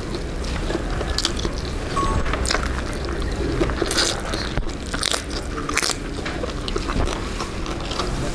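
Close-miked eating of instant noodles: strands slurped into the mouth by hand and chewed, in a string of irregular wet slurps and chews.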